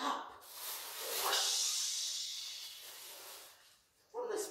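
A person making a long, drawn-out 'shhh' hiss with the mouth to imitate spraying water, swelling in the middle and fading away before the end.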